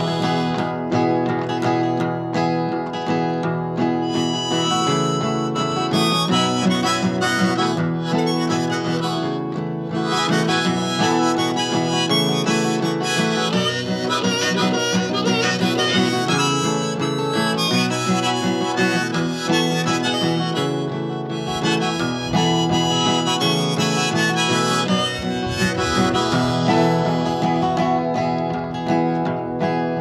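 Solo acoustic folk playing: an acoustic guitar strummed in a steady rhythm under a harmonica played from a neck rack, carrying the melody without singing.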